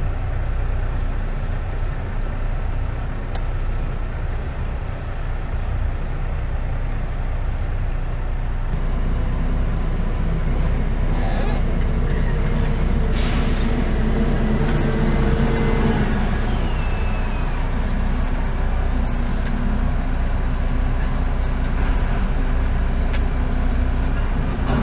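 Truck engine idling, heard from inside the cab as a steady low rumble. About 13 seconds in there is a short, sharp hiss of air, and from about 9 to 16 seconds a humming tone sits over the rumble.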